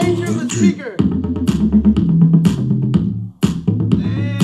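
Music with a steady drum beat and a strong bass line playing through Rockville Cube 3.5-inch two-way satellite speakers in a five-speaker setup with no subwoofer. The music drops out for a moment a little before the end.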